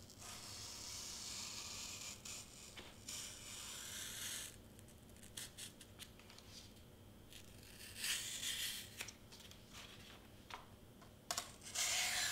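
Craft knife blade slicing through foam board, a faint scratchy hiss in one long stroke over the first four seconds or so and a second, shorter stroke about eight seconds in, with small clicks and ticks in between.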